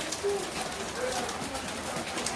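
Indistinct voices of people talking in the background, over rustling phone-microphone noise.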